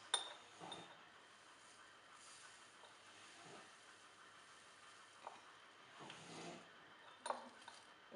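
Quiet handling of a paper sachet over a small glass jar: a couple of light glass clinks near the start, then a few faint rustles and taps as powder is tipped in.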